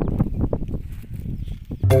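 Irregular low knocks and rustling with no speech. Marimba-like mallet-percussion music starts near the end.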